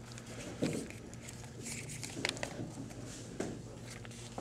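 Trading cards and plastic packaging being handled: faint rustling with a few sharp clicks, over a steady low hum.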